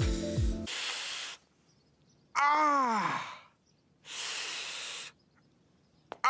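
Cartoon man's pain sounds over a hurt knee: a hiss of breath sucked in through the teeth, a loud groan falling in pitch, then another hiss. The background music cuts off just before the first hiss.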